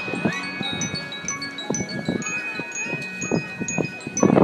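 Wind chimes in a marching band's front ensemble shimmering and ringing through a soft passage, with scattered light percussion strikes underneath.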